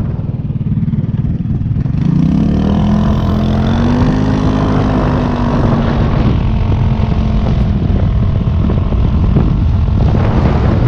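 GY6 150cc four-stroke single-cylinder scooter engine pulling away from a stop: the engine note rises about two seconds in and then holds steady while cruising. The exhaust has been made louder with washers.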